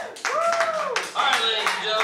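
A small audience applauding just after a live band's song ends, with scattered handclaps and voices calling out over them.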